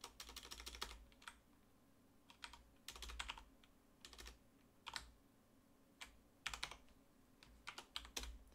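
Faint typing on a computer keyboard: clusters of keystroke clicks in short bursts with brief pauses between, as a terminal command is keyed in.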